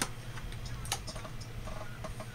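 Two sharp clicks about a second apart over a steady low hum.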